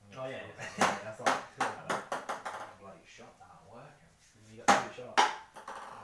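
Ping-pong ball bouncing on hard surfaces: a run of sharp clicks that come quicker and quicker in the first two seconds, then two more loud hits near the end.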